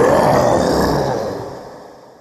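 A film sound effect of a Tyrannosaurus rex roar. It is a deep, rough roar that rises in pitch at the start, then fades away over the last second.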